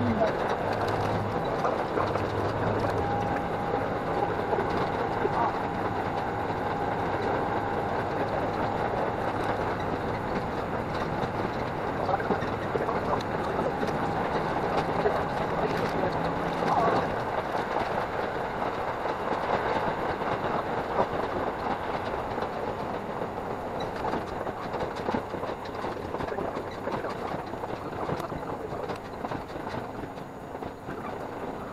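A diesel railcar's running noise heard from inside the passenger cabin, engine and wheel-on-rail noise blended into a dense, steady din, sped up five times.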